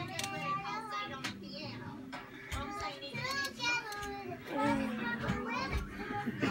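Indistinct children's voices over music playing in the background, with a steady low hum underneath.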